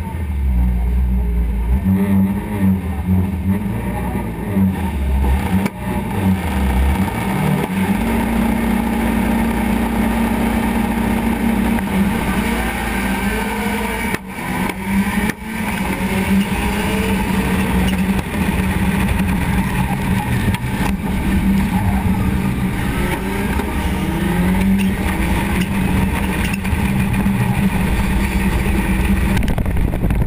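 Rallycross car engine heard from a wing-mounted onboard camera, revving and running hard in a race. The pitch rises and falls through gear changes, and the sound drops briefly twice around the middle.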